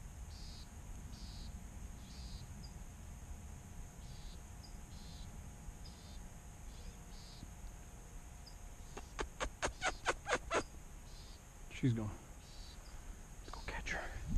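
Quiet outdoor ambience: a steady low wind rumble with a faint high chirp repeating about twice a second, broken about nine seconds in by a quick run of about eight sharp ticks lasting a second and a half.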